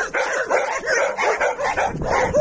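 Dogs barking and yipping in quick, irregular, overlapping barks, several a second.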